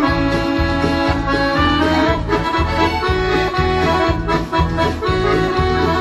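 B. Brandoni button accordion playing a tune: a sustained right-hand melody over an even beat of bass and chord buttons, about two a second.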